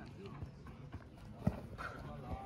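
A single dull thud of the heavy krachtbal ball about one and a half seconds in, over faint voices of players on the field.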